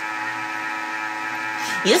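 Electric mixer running steadily with a constant hum while it whips egg whites. A woman starts to speak near the end.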